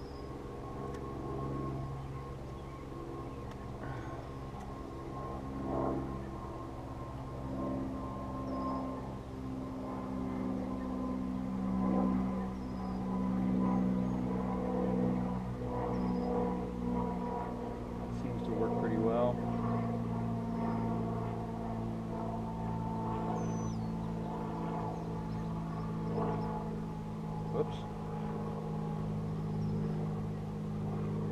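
Honey bees buzzing around an open hive, a steady hum, with a few faint bird chirps and a light knock near the end.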